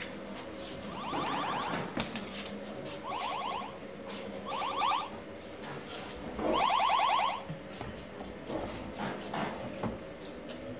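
Zarbi giant-ant creature sound effect, an electronic chittering: four short bursts of rapid rattling pulses, the last one the longest, over a steady low electronic hum.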